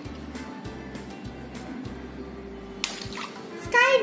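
A water balloon bursts about three seconds in: one sharp pop with a brief splash of water, over steady background music.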